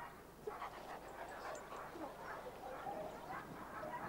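A German Shepherd's faint, scattered sounds as it runs across grass.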